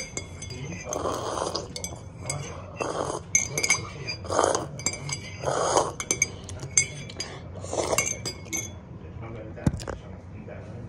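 Repeated clinks of a metal spoon against a glass, each ringing briefly at a high pitch, with short breathy mouth sounds between them. A single sharper knock comes near the end.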